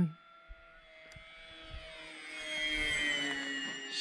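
Electric motor and propeller of a Durafly Brewster Buffalo RC warbird flying past at half throttle: a whine that grows louder over about three seconds, then drops in pitch as the plane goes by.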